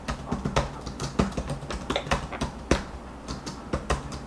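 Typing on a computer keyboard: irregular keystroke clicks, several a second, picked up by an open microphone.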